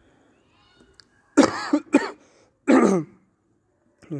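A man coughing, three hard coughs in quick succession beginning about a second and a half in.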